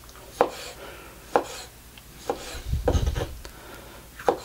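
Marser STR-24 knife slicing very soft marinated red pepper on a wooden cutting board, the blade tapping the board four times, about once a second.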